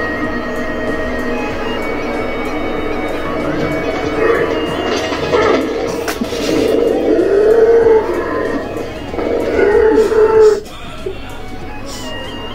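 Music from a stage performance: a steady droning accompaniment, with a woman singing loud, wavering notes from about four seconds in, cutting off suddenly near the end.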